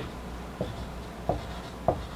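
Dry-erase marker writing on a whiteboard: three short strokes about two-thirds of a second apart.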